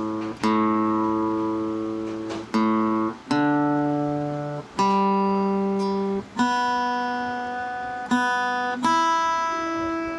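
An Art & Lutherie acoustic guitar being tuned. Single strings are plucked one at a time, about six times, and each is left to ring and fade for a second or two. Near the end one note steps up slightly in pitch as it is adjusted.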